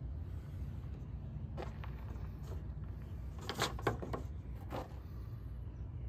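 A steady low background rumble, with a few brief, soft rustles as a rolled cotton-ball-and-wood-ash fire roll is handled and pulled apart between the fingers; the rustles cluster a little after the middle.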